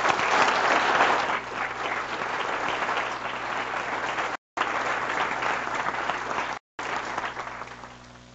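Audience applauding, loudest in the first second or so and tapering away near the end, with two brief cuts in the recorded sound.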